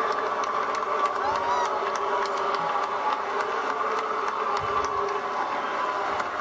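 Steady crowd noise from a large audience, with scattered sharp clicks through it and faint voices, heard through a TV speaker.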